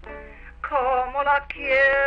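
A woman singing a Spanish love song with guitar on a 1939 field recording; after a brief lull her voice comes back in about half a second in and leads into a long held note near the end. A steady low hum runs underneath.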